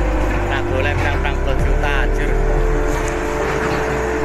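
A heavy engine running steadily with a low hum, with people's voices over it in the first two seconds.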